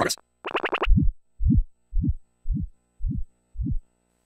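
Sonarworks Reference 4 calibration test signal played through the right studio monitor, heard close to the speaker. A brief higher buzzy tone is followed by six short low-pitched pulses about half a second apart.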